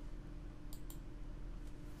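Faint computer mouse click about three-quarters of a second in, heard as two quick ticks, over a low steady room hum.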